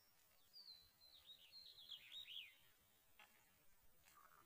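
Faint bird song: a run of high whistled notes, then quick falling chirps, over the first two and a half seconds, with little else but faint outdoor background noise.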